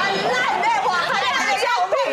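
Only speech: several people talking over one another in quick, lively chatter.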